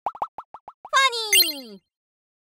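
Animated logo sting: a quick run of about seven short pops, then a bright chord that slides steadily down in pitch, with a chime ringing out about halfway through. It cuts off just before the end.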